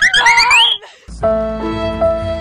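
High-pitched excited shrieks from young women, rising in pitch, for under a second. After a brief drop-out, background music with long held chords comes in.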